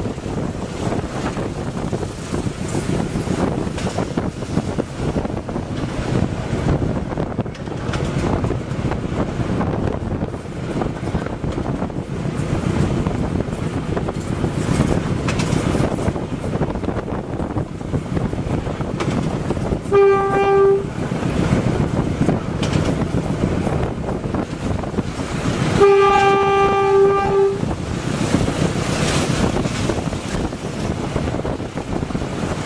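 GE U15C diesel-electric locomotive running under way, its engine and wheel-and-rail noise heard from the cab. The horn sounds one steady note twice: a short blast about two-thirds of the way through, then a longer one about five seconds later.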